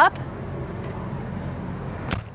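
A steady low mechanical hum of a vehicle engine running.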